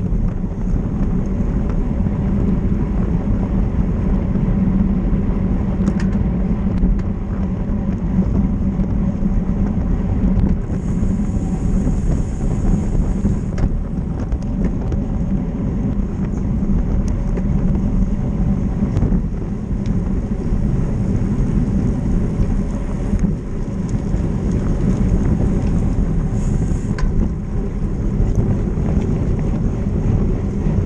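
Wind rushing over a bike-mounted action camera's microphone at race speed, a steady low rumble with road and tyre noise. A thin high hiss joins in twice for a few seconds.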